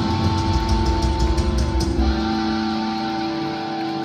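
Live rock band playing. A guitar holds long sustained notes, with cymbal strokes through the first half, and the low end thins out near the end.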